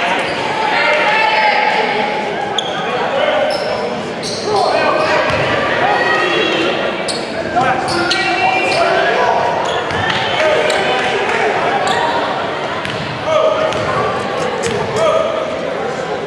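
Several people's voices talking at once and echoing in a gymnasium during a break in play, with a few sharp knocks from a basketball being bounced, the loudest two near the end.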